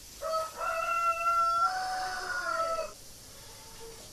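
A rooster crowing once, one call of about two and a half seconds that steps in pitch partway through.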